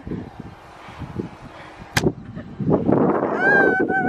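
A game of catch with a tennis ball: a single sharp knock about two seconds in, then loud rustling handling noise as the person filming moves, and a woman's high-pitched squeal held near the end.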